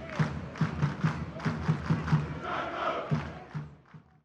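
A crowd chanting in a rhythm, fading away just before the end.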